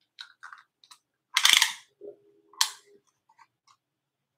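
Handling noises while a small glass bud vase is measured: faint clicks, a short rattling burst about a second and a half in, a brief low tone, and a sharp click shortly after.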